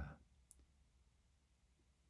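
Near silence: room tone, with a single faint click about half a second in.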